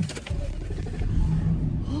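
Low, steady rumble of a car being driven, heard from inside the cabin.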